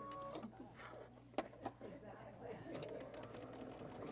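Baby Lock sewing machine stitching through a quilt block, starting up a little over halfway in and then running steadily at low volume. Two light clicks come before it starts.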